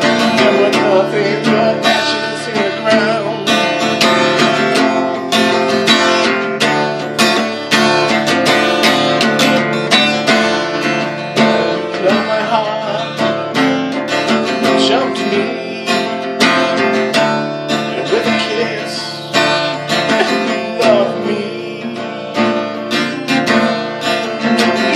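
Acoustic guitar strummed in a steady, continuous rhythm of chords, with the strokes coming close together.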